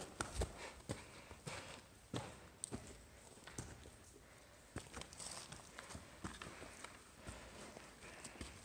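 Irregular footsteps and scuffing on loose rock and soft sand, with scattered small knocks, as someone picks their way down a steep slope.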